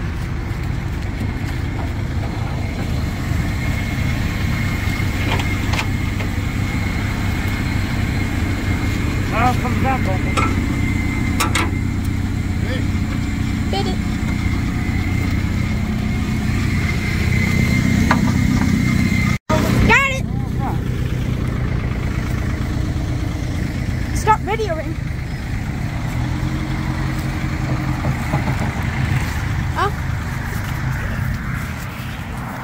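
An engine idling steadily with an even low rumble, briefly cut off about two-thirds of the way through.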